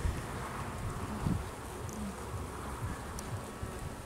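Honeybees from an open hive buzzing in a steady hum, with a couple of soft knocks as a frame is handled.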